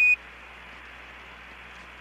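A short single-pitch beep right at the start: a Quindar tone marking the end of a ground transmission on the Apollo 17 air-to-ground radio loop. After it comes steady radio channel hiss.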